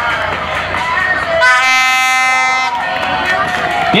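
A loud, steady horn-like note held for a little over a second, starting about one and a half seconds in, over a busy background of voices.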